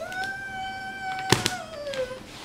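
A woman's voice holding one high sung note, sliding up at the start and gliding down near the end. A short sharp knock cuts in partway through.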